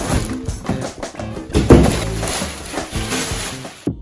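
Background music with a bass line and a steady beat, over a rustling, crinkling noise of plastic packaging being handled. The rustling cuts off suddenly near the end while the music carries on.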